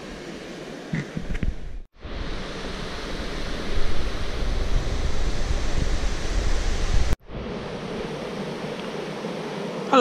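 Steady rushing noise of flowing river water and wind, cut off abruptly twice, about two seconds in and about seven seconds in. The middle stretch is louder, with a deep rumble.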